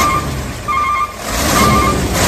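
A vehicle's reversing alarm beeps three times, about once every 0.8 s, over loud engine and road noise that grows louder in the second half: a truck backing up, laid in as a sound effect.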